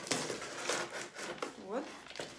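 Parcel packaging being handled: a quick run of crackles and rustles from the box and its wrapping.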